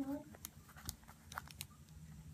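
Folded origami paper crinkling in a few faint, short snaps as a paper tab is forced into a slot of a modular Sonobe cube.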